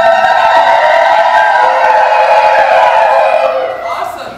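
A woman's high, trilled ululation (zaghareet) held for about four seconds through a microphone and PA, fading near the end.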